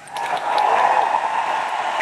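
Audience applauding in a hall as the orchestral piece ends. The applause swells within the first half second, then holds steady.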